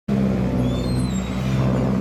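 1996 Kawasaki Zephyr 1100RS's air-cooled inline-four running steadily through a BEET Nassert aftermarket exhaust, a loud, deep, even exhaust note.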